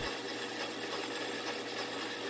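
Metal lathe running a light turning pass on a thin O1 tool-steel drill rod: a steady, even hiss of the cut and the machine, with a faint steady tone.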